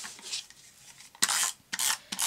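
American Crafts permanent dot adhesive roller drawn across the back of a piece of paper, two short rasping strokes about a second apart in the second half, after some lighter paper handling.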